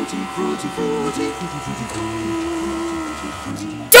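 Young voices chanting and murmuring in a low, broken stream, with a faint steady hum underneath. A loud burst of music comes in right at the end.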